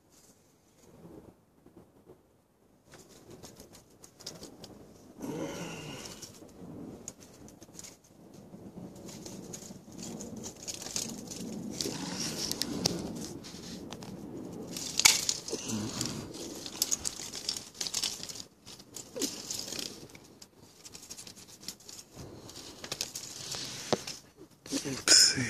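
Rustling and crackling of leaves and twigs being handled in a lemon tree, with irregular snaps. The loudest snap comes about fifteen seconds in, after a quiet first few seconds.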